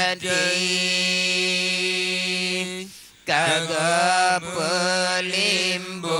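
Male voices chanting Acehnese meudike, a devotional dhikr chant, unaccompanied into microphones. One long held note breaks off about three seconds in, then resumes as a wavering, ornamented line.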